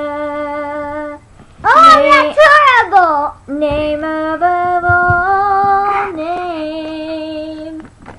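A woman singing a worship song unaccompanied, in long held notes with vibrato. About two seconds in comes a louder, higher vocal passage that slides down in pitch.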